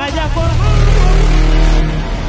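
Loud, bass-heavy sound effect of a channel logo sting, with a deep steady rumble under music, opening a promo trailer.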